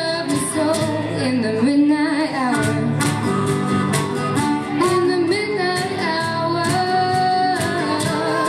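A live blues band: a woman singing, with harmonica and guitar, over a steady beat.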